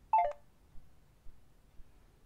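Short electronic beep from an Android phone's voice-assistant app, stepping down from a higher note to a lower one just after the start: the tone that marks the end of listening to a spoken command.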